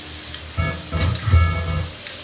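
Aerosol spray-paint can hissing steadily as paint is sprayed onto a wall. About half a second in, deep bass-heavy music comes in and runs for about a second and a half, louder than the hiss.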